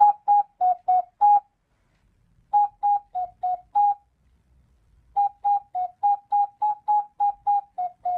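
An intro jingle: a simple tune of short, separate notes moving between two or three neighbouring pitches, in three phrases: about five notes, a pause, five more, a pause, then a longer run of a dozen or so.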